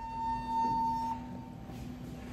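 Passenger elevator running: a steady high whine that stops about a second in, over a lower steady hum that keeps going.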